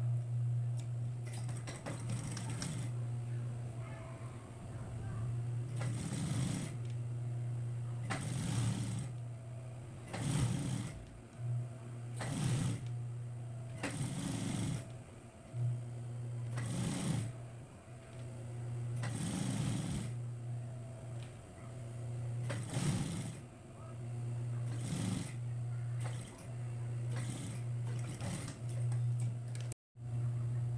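Industrial sewing machine topstitching: a steady motor hum broken every two seconds or so by short bursts of stitching. The sound drops out for a moment just before the end.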